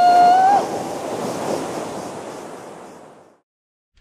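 A man's long held 'woo!' shout ends about half a second in. A rush of water and wind noise follows and fades out over about three seconds into silence.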